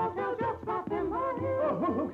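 Hillbilly song on an old cartoon soundtrack: a voice singing in a warbling, yodel-like style over musical accompaniment.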